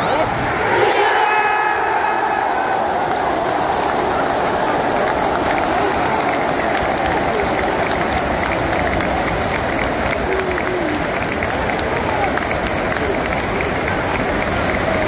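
Football stadium crowd cheering as the home side scores a goal: a loud surge of shouting about a second in that carries on as a steady roar of cheering.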